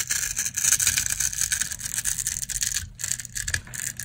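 Knife slicing the grid-scored face off a bar of dry soap: a dense, nearly continuous crisp crunching and crackling as the small cubes break away, with a few short breaks in the last second.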